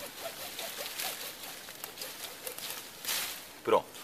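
Fine-toothed hand saw cutting through a thin lychee branch with quiet, scratchy rasping strokes. A brief louder scrape about three seconds in marks the cut going through.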